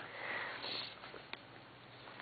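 A short, quiet breath drawn in through the nose, a sniff, in the pause between hesitant 'um's, followed by a faint click about a second and a half in.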